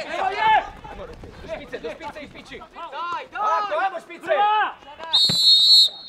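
Referee's whistle: one short, shrill blast of under a second, about five seconds in, stopping play. Men's shouts of instruction come before it.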